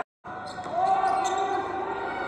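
A moment of dead silence at an edit, then the sound of a basketball game in a gym: a ball bouncing on the hardwood court, with voices from the stands.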